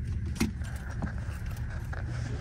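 Steady low rumble of a moving car ferry heard inside the cabin of a car parked on its deck, with a couple of light clicks, the sharpest a little under half a second in.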